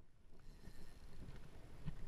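Wind rumbling on the microphone, with a few faint ticks and one sharp click near the end.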